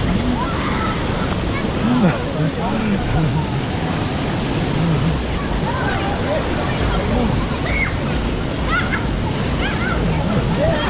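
Steady rush of splashing pool water and fountain spray, with children's voices calling and chattering over it, higher-pitched calls coming more often in the second half.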